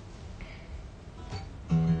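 Acoustic guitar being played: quiet, faint handling for most of the moment, then notes struck near the end that ring on.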